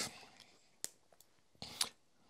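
Laptop keyboard keys being pressed: a single sharp click a little under a second in, then a quicker, louder cluster of clicks near the end, with quiet between.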